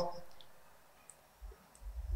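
A few faint, short clicks in a quiet room, just after a drawn-out spoken "So" dies away.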